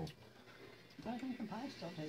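A short near-silent pause, then quiet talking from about a second in, softer than the voices around it.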